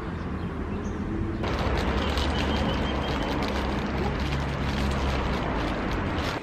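Steady outdoor background noise: a rushing haze with a low rumble, stepping up louder and brighter about a second and a half in.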